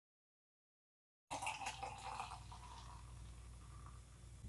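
Beer being poured into a pint glass, starting suddenly about a second in, loudest at first and then settling into a steadier fill.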